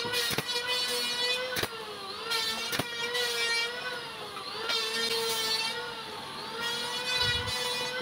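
Pneumatic nailer firing three sharp shots about a second and a half apart while fastening wooden strips, over a steady droning machine hum that wavers in pitch.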